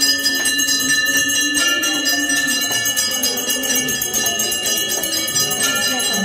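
Temple bells ringing rapidly and without a break, the bell-ringing of an aarti.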